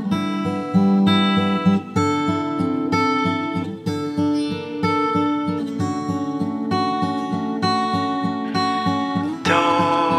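Instrumental acoustic guitar music: fingerpicked chords over a steady, evenly pulsing bass line. A brighter, higher part comes in near the end.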